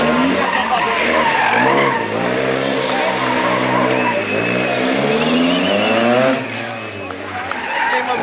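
Small hatchback rally car's engine revving hard up and down through tight turns around cones, with tyres squealing and skidding on the asphalt; the engine note drops away about six seconds in.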